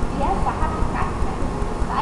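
A few short, indistinct voice sounds over a steady low rumble.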